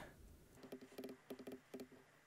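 Faint, irregular clicking of a computer mouse and keyboard in several short clusters, from desktop editing work.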